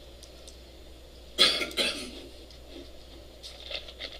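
A person coughing twice in quick succession about a second and a half in, followed by a few faint clicks near the end.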